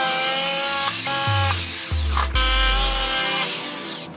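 Corded electric jigsaw cutting through a wooden board, stopping right at the end. Electronic music plays over it.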